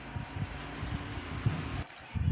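Steady background hiss with a few faint low thumps, cutting off abruptly near the end.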